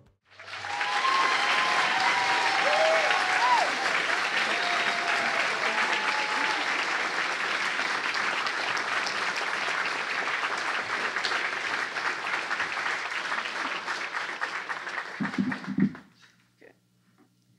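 Audience applauding steadily, with a few cheering and whooping voices in the first half. The applause cuts off suddenly at the end.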